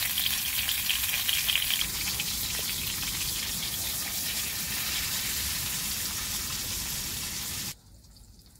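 Food frying in bubbling oil in a small pan on a canister gas stove: a steady sizzle, crackling for the first two seconds, that cuts off abruptly near the end.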